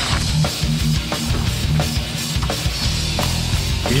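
Background rock music with a steady drum beat and a heavy low end.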